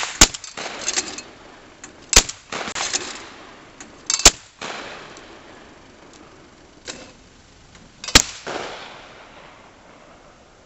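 Shotgun shots at thrown clay targets: four sharp reports, about 0.2, 2, 4 and 8 seconds in, each trailing a long fading echo. Softer clattering bursts in between come from the Champion EasyBird auto-feed trap thrower launching clays.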